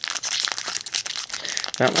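Foil Magic: The Gathering booster pack wrapper crinkling and tearing as it is ripped open by hand: a dense run of fine crackles.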